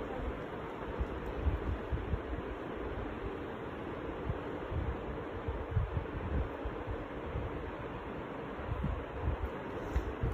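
Steady background hiss with irregular low rumbles from a handheld phone microphone being handled.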